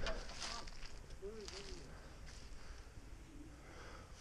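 Footsteps rustling through dry grass and brush, with a brief faint hum of a voice about a second in.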